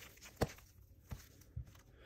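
Trading cards being flipped through in the hands: a few quiet clicks and taps as the cards slide and knock against one another, the sharpest a little under half a second in.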